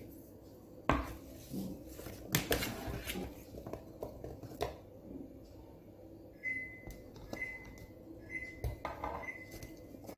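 A spoon knocking and scraping in a bowl as diced apple and pear are scooped into a plastic steamer basket, in a handful of scattered clinks.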